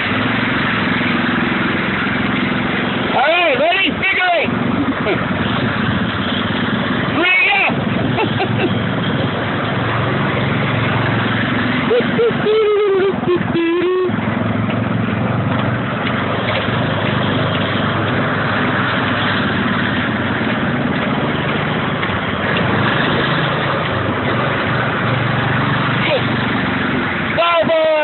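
Small engines of several camel-bodied go-karts running and changing speed as they circle a paved lot, with a few short shouts or calls from the riders.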